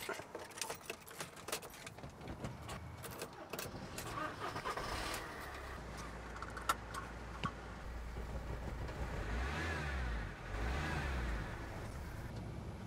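Keys and a seatbelt buckle clicking, then about four seconds in a Volkswagen Transporter T5 van's engine starts and settles into a low idle, heard from inside the cab. The engine grows louder for a couple of seconds near the end.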